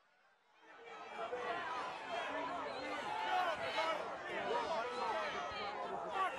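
A large crowd yelling and shouting, many voices at once, starting abruptly about a second in.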